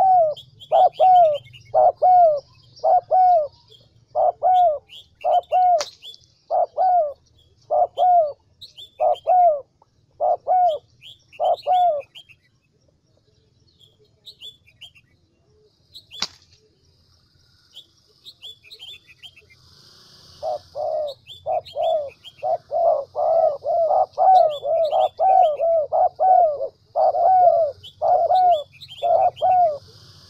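Spotted dove cooing in a long, evenly spaced series of short coos. The coos stop about twelve seconds in and start again, more closely spaced, after about eight seconds. Fainter high chirps of small birds are behind them, and there are two sharp clicks.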